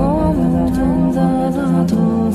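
Meditative vocal music: several layered voices hold wordless notes over a steady low drone, with one voice gliding upward near the start.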